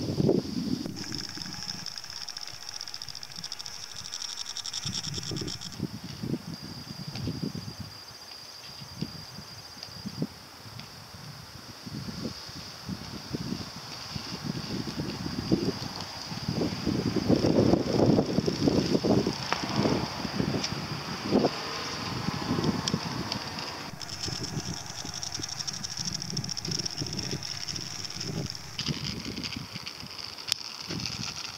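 Wheels rolling on an asphalt path with an uneven low rumble, loudest about two-thirds of the way through. A steady high whirring is strong at first, fades about six seconds in and comes back strongly after about 24 seconds.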